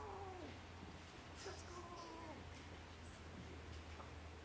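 Faint high vocal sounds, several short gliding calls that rise and fall in pitch, over a steady low hum.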